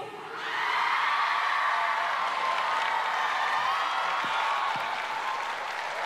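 Live audience cheering and applauding between songs, with high voices shouting over the clapping at a steady level.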